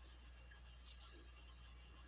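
Small metal jingle from the cat's collar as it moves: two quick clinks close together about a second in.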